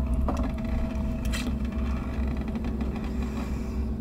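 A steady low rumble of background ambience with a faint hum, broken by a few soft clicks.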